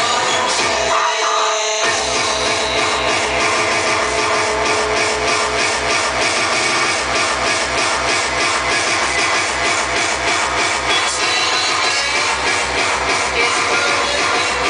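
Hardcore techno played loud over a sound system, driven by a fast, steady kick drum. The kick drops out briefly about a second in and comes back just before two seconds.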